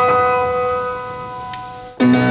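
Music: a single chord struck on a piano at the start, ringing and slowly fading.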